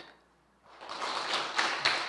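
A brief silence, then audience applause rises in under a second in and carries on steadily.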